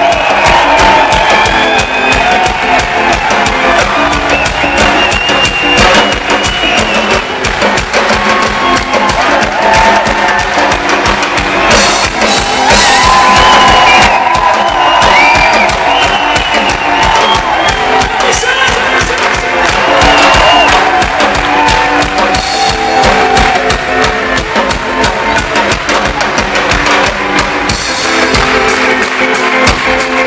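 Live rock band playing loud: a drum kit beating steadily under electric guitars and bass, with a wavering melody line on top. Recorded from the crowd.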